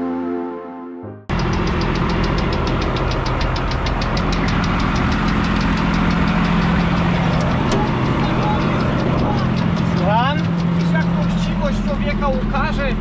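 Music cuts off about a second in, replaced by a John Deere 7400 self-propelled forage harvester running loudly and steadily, with a fast, even ticking above the engine hum.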